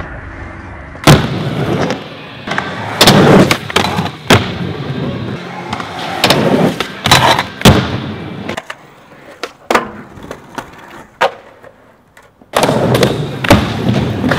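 Skateboard wheels rolling on concrete, broken by several sharp tail pops and board landings as tricks are done. The rolling fades out about twelve seconds in, then comes back loud.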